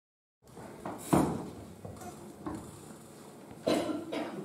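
A brief dropout to dead silence, then quiet room sound with a few scattered knocks and clatters, the sharpest a little after a second in and another near the end.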